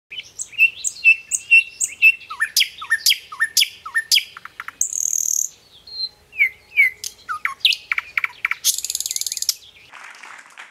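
Several birds calling at once: repeated high chirps, short swooping whistled notes and sharp chips. A harsh buzzing rattle comes about five seconds in, and a longer one just before the end.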